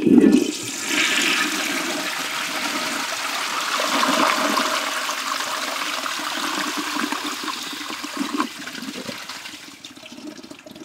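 1927 Standard Devoro toilet with an exposed priming jet flushing: water surges in suddenly, rushes steadily and swirls down the bowl, then tapers off near the end.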